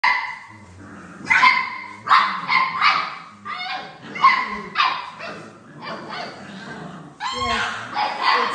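A litter of bullmastiff puppies, almost eight weeks old, barking: a dozen or so short, sharp barks in quick succession, some overlapping.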